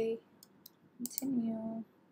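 Two quick computer-mouse button clicks about half a second in, with another near the one-second mark, as the Continue button is clicked on a web page. Short bits of a woman's speech come before and between the clicks.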